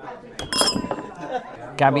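A single clink of tableware about half a second in, ringing briefly, over faint restaurant chatter.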